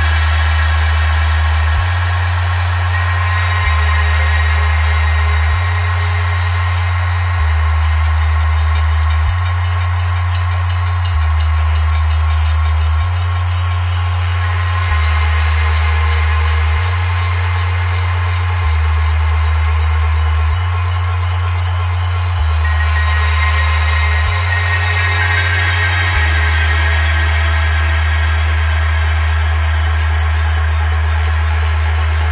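Experimental metal-percussion music: a deep bass steps back and forth between two low notes about every two seconds under a fast, continuous patter of ticking hits and a wash of ringing metallic tones. Near the end the bass settles on one held note and the ringing grows brighter.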